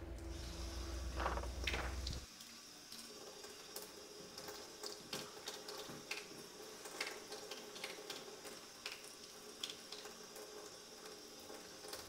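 Faint hiss of tap water running through a PF2 fluoride filter held against a kitchen faucet while it is primed, with many small ticks and crackles. A low hum runs for about the first two seconds, then stops.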